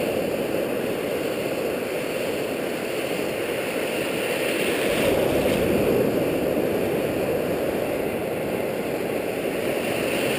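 Ocean surf breaking and washing around the shore as a steady rushing, swelling a little about halfway through.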